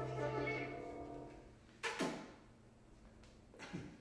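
The last chord of a jazz tune dying away on a Roland RD-800 digital stage piano, fading out within the first second and a half. A short sharp sound follows about two seconds in, then a brief murmur near the end.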